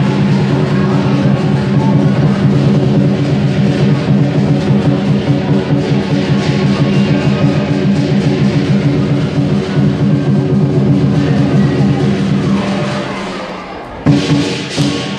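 Lion dance drum and clashing hand cymbals playing a dense, continuous beat over the cymbals' sustained ringing. The playing dies away near the end.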